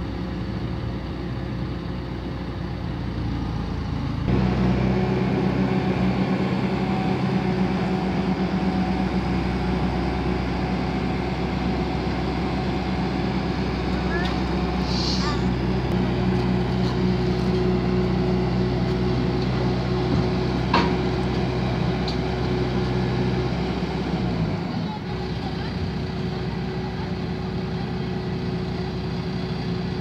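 Skid-steer loader's engine running, revving up and working under load from about four seconds in, then easing back near the end, with a couple of sharp knocks of metal.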